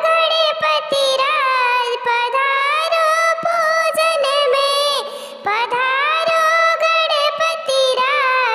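A very high-pitched, chipmunk-like pitch-shifted voice singing a Hindi devotional folk song to Ganesh, with a short break about five seconds in.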